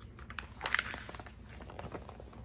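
A page of a picture book being turned: short, rustling crackles of paper, bunched about half a second to a second in.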